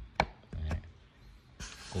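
Fingers tapping the fabric dust cap of a JBL EON 1500's 15-inch woofer: one sharp tap a fifth of a second in, then a softer knock about half a second later. A short rustle follows near the end.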